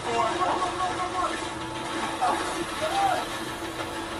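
Played-back television show audio: brief voices over a steady background music bed, with no single loud event.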